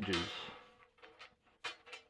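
A few light clicks and knocks of short quarter-inch steel flat bar pieces being handled and set against a wooden hexagon pattern on a steel weld table; the loudest click comes about one and a half seconds in.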